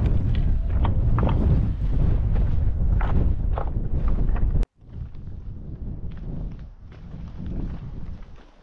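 Wind buffeting the camera microphone, with footsteps on loose stones and rock. A little past halfway the sound cuts off abruptly, then resumes quieter with lighter footsteps and wind.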